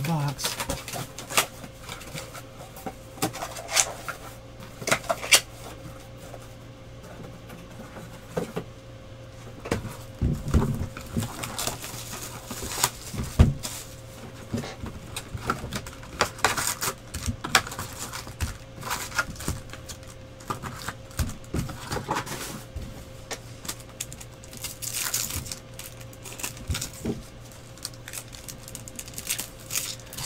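Trading cards being handled and sorted into piles: irregular clicks, taps and light slaps of stiff chrome card stock against the table and each other, over a steady faint hum.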